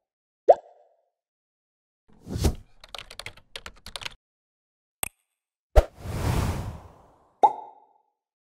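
Animated-graphics sound effects: a short bubbly plop, a whoosh, then a quick run of keyboard-typing clicks. After a single click comes a hit with a swelling whoosh, and a second plop near the end.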